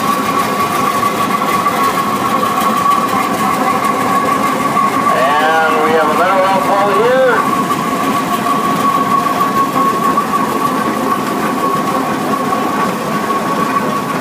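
Large early gasoline prairie tractors running at low speed as they pass in a line, their engines giving a continuous mechanical rumble, with a steady high whine throughout. A man's voice comes in briefly about five seconds in.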